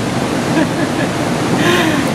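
A steady rushing background noise with no distinct events, and a short voice sound near the end, leading into a laugh.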